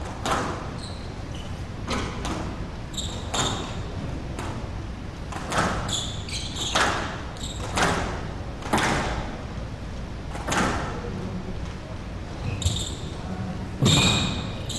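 Squash rally in a glass-walled court: a squash ball struck by rackets and hitting the walls about once a second, each hit echoing in the hall, with short high squeaks of players' shoes on the court floor between hits.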